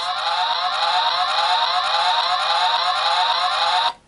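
Electronic police-siren sound effect from the Delta Runner 1 toy car of the Bandai Dekaranger Robo (Delta Squad Megazord), played through its small built-in speaker after its button is pressed. It is a repeating rising wail, about two sweeps a second, and it cuts off suddenly just before the end.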